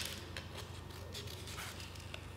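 Small scissors snipping into several layers of folded paper: one sharp snip right at the start, then a couple of faint ticks over quiet room tone.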